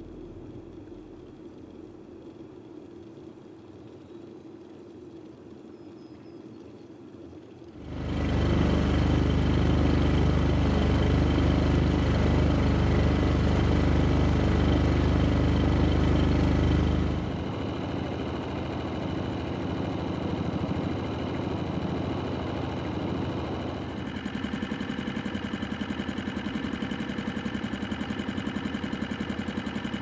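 A boat's engine running steadily while the boat is under way, coming in suddenly and loud about eight seconds in, then settling to a lower, quieter running about halfway through; before it only a faint low hum is heard.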